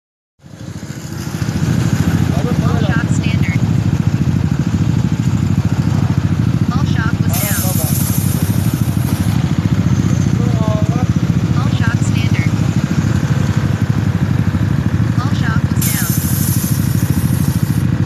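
A Yamaha Aerox scooter running steadily. About 7 and 16 seconds in come two hisses of air, each about two seconds long, from its phone-controlled air suspension.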